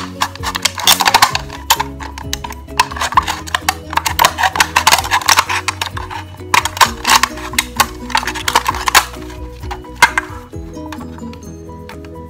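Background music, over which a utility-knife blade rasps and clicks in quick, irregular strokes as it cuts into a thin aluminium drink can; the cutting stops about ten seconds in.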